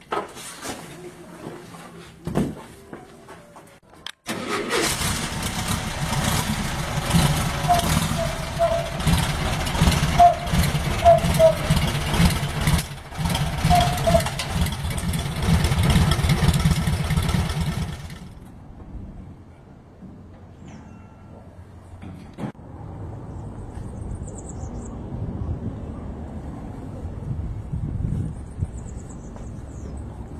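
Volkswagen Brasília's rear-mounted air-cooled flat-four engine firing up about four seconds in, after standing with a flat battery. It then runs loud and uneven with a few short throttle blips. The loud running ends abruptly about eighteen seconds in, and a fainter, steadier engine sound follows.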